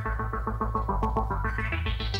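A live band's closing sustained electric-instrument tone, pulsing about eight times a second and sliding down and then back up in pitch over a steady low drone, with no drums playing.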